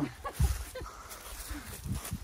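Footsteps on a thick layer of dry fallen beech leaves: a few soft, irregular steps and leaf rustles, with a brief faint vocal sound near the end.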